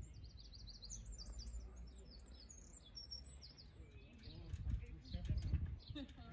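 A small bird singing a quick run of high, repeated chirping notes through the first half, over a low outdoor rumble that swells in the last two seconds.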